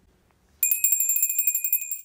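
Small handbell rung rapidly and continuously to summon someone, starting about half a second in: a bright ringing tone over a fast clatter of clapper strikes that stops right at the end.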